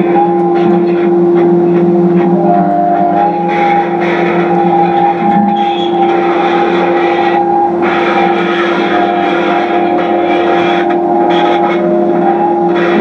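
Experimental noise from an electric guitar run through a chain of effects pedals: a loud, steady drone is held under higher tones that shift in pitch, over a dense hissing layer that briefly drops out a few times.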